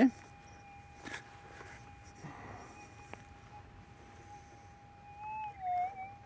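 Minelab gold metal detector's audio: one steady mid-pitched tone as the coil sweeps over a target still buried in the sand. The tone wavers in pitch and grows briefly louder near the end.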